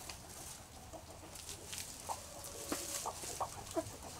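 Gamefowl chickens clucking softly in a pen: scattered short, low notes, with one longer held note about two seconds in.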